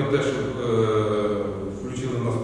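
A man speaking, with long drawn-out syllables.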